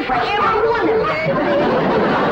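A loud jumble of overlapping voices and cries, many at once, with no single voice standing out.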